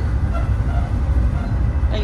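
Steady low rumble of a moving Metra commuter train, heard from inside the passenger car as it rolls along the track.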